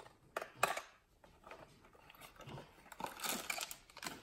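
Scissors snipping the tape on a small cardboard box: two sharp snips about half a second in, then softer rustling and handling of the box toward the end.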